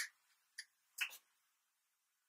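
Near silence broken by two short clicks, a faint one about half a second in and a louder one about a second in.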